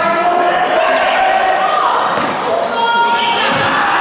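Basketball being dribbled on a hardwood gym floor, with voices calling out over the noise of players and spectators in the gym.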